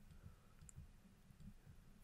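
Faint clicks and ticks of a stylus writing on a digital pen tablet, heard against near silence.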